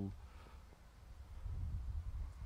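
A man's preaching voice ends a word at the very start, then a pause with only a faint low rumble.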